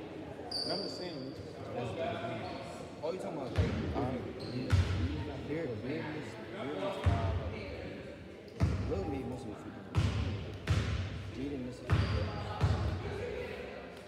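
A basketball bouncing on a hardwood gym floor, slow single bounces about a second apart with a booming echo from the hall, over people chattering.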